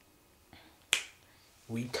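A single sharp finger snap about a second in, ringing off briefly; a man starts speaking near the end.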